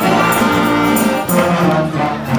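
Big band playing live, with the brass section of trumpets and trombones to the fore.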